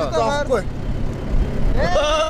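Steady low rumble of a truck driving over a dirt road, heard from its open cargo bed. Men's voices over it: talk in the first half-second, then a long drawn-out vocal note starting near the end.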